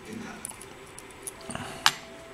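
Steel tweezers and small brass lock pins clicking faintly as driver pins are picked out of a lock cylinder, with one sharper click near the end.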